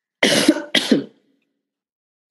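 A person coughing twice in quick succession.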